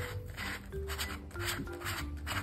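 Light silent-film piano music plays. Over it come about four rough rubbing and scraping sounds, about half a second apart, from hands turning and working a plastic smart cat toy ball.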